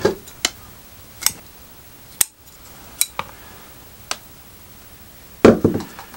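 A handful of sharp, separate clicks and taps from bonsai hand tools being handled while roots are worked on a rock. The loudest click comes a little after two seconds in, and a louder bout of handling noise follows near the end.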